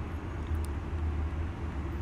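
Steady low background rumble, with no distinct event in it.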